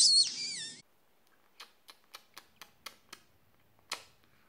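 Galah cockatoo giving a short whistled call that glides down in pitch, in the first second. It is followed by a run of faint clicks, about four a second, with a sharper click near the end.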